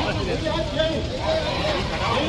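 Several people talking at once in a crowd, voices overlapping over a steady low rumble.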